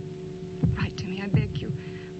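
A woman's voice speaking over a steady low hum. The words start about half a second in.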